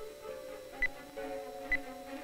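Short high beeps about once every 0.9 seconds, the acoustic locator signal of a lost prototype torpedo transmitting from the seafloor. They sound over held, slowly shifting low music tones.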